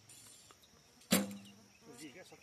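Recurve bow being shot: one sharp snap of the bowstring on release about a second in, with a short ringing twang that fades within half a second. Faint insect buzzing underneath.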